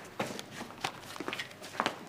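Footsteps of a woman walking in heeled boots: several separate light steps spread over two seconds.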